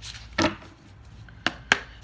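A deck of oracle cards being handled and shuffled, giving three sharp knocks: one about half a second in and two close together near the end.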